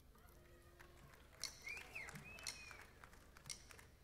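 Near silence from a hushed concert audience: a few faint scattered clicks and a brief faint whistle-like glide in the middle.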